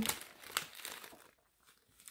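Small plastic zip-lock bags of diamond-painting drills crinkling faintly as they are handled, dying away after about a second.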